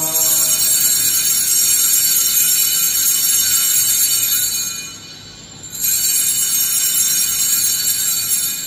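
Cluster of small altar bells shaken in a long, steady jingling ring, breaking off about five seconds in and ringing again a moment later. The ringing marks the elevation at the consecration of the Mass.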